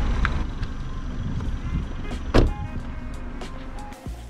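A small hatchback's door shutting with a single loud thump about two and a half seconds in, over a steady low rumble.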